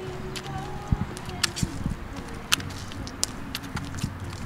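Footsteps on dry leaf litter and grass, heard as a few irregular sharp clicks and crunches.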